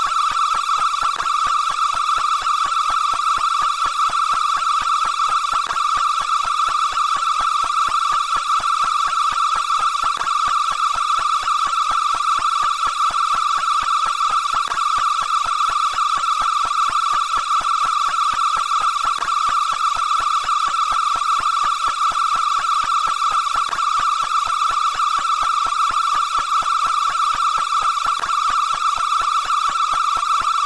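Auto-tuned "suiii" shout stretched into one steady high-pitched tone with a fast buzzy flutter, held without a break.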